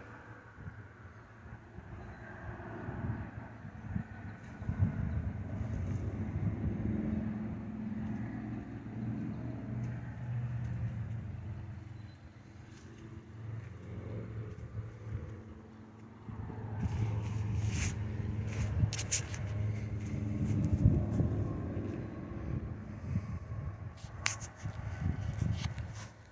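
Low rumble of a motor vehicle's engine nearby, swelling and fading, easing off about halfway through and then building again. A few sharp clicks in the second half.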